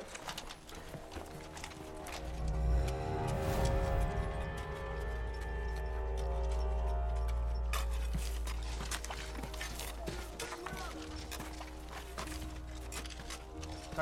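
Film score music with long held tones over a deep rumble, swelling about two seconds in. From about eight seconds in, many small knocks and clatters run under it.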